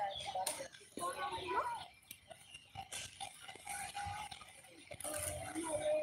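Indistinct voices of people talking, not clear enough to make out words.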